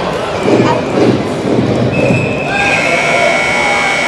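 Arena hockey play heard from behind the glass: a few sharp knocks of puck and sticks against the boards amid crowd noise, then, about halfway through, a long steady high-pitched tone that holds to the end.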